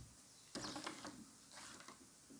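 Faint clicking and rustling from gloved hands handling a utility knife and pieces of soap. A short run of small clicks comes about half a second in, with a few fainter ticks near the end.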